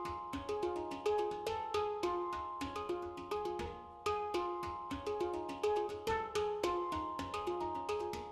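Hang drums (steel handpans) played with the bare hands: a fast, even run of struck notes, each ringing on as a clear pitched tone, in a repeating melodic pattern.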